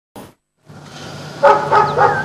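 Dogs barking at an animal shelter: a background din builds, then two loud barks come about a second and a half in.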